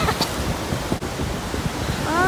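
Ocean surf washing in over the shallows, with wind buffeting the microphone.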